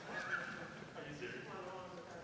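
Indistinct murmur of people talking and moving about in a large hearing room, with a brief high-pitched squeak about a third of a second in.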